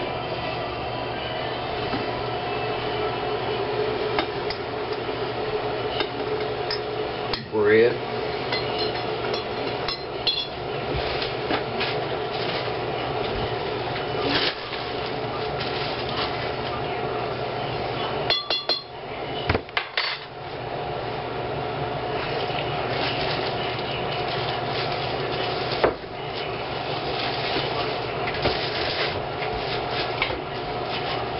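Dishes and utensils clinking and knocking against a large glass mixing bowl as ingredients are added and worked by hand, with scattered sharp knocks over a steady kitchen hum.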